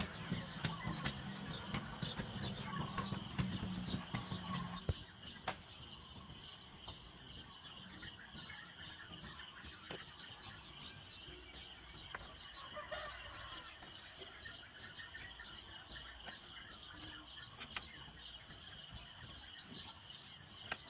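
Insects chirping in repeated pulsing trains, with a few light knocks from bamboo poles being handled. A low hum sits underneath for the first five seconds.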